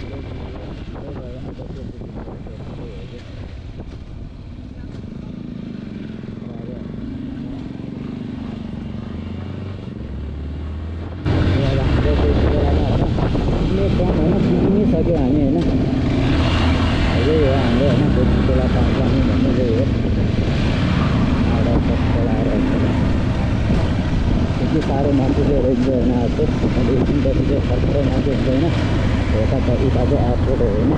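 Yamaha motorcycle running on the move, heard from the rider's camera as engine hum mixed with road and wind noise. About eleven seconds in, the sound steps suddenly louder and brighter.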